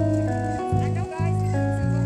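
Background music: held bass and chord notes that change about every half second, with a singing voice over them.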